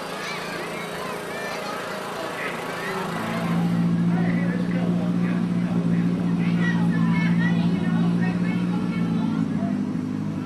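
Engine of a parade vehicle outlined in string lights passing close, a steady low drone that swells about three seconds in and eases near the end, over crowd chatter.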